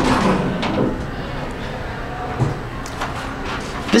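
Sliding doors of an Otis Series 2 hydraulic elevator closing, with a burst of rumble as they shut right at the start. A steady noise follows in the small cab.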